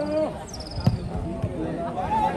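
A football kicked hard on a dirt pitch: one sharp thump a little under a second in, among the shouting voices of players and onlookers.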